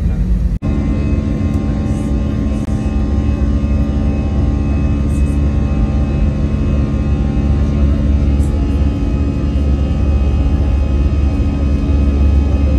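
Airliner cabin noise from an Airbus A320: a loud, steady engine drone with a deep rumble and several constant humming tones, unchanging in pitch. A sudden brief dropout about half a second in.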